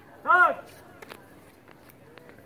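A single short, loud shouted call from a man's voice about a third of a second in, its pitch rising then falling, followed by a few faint clicks.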